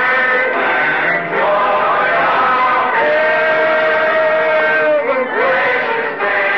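Congregation singing a slow hymn, with a long held note in the middle, on an old tape recording that sounds dull and lacks the highs.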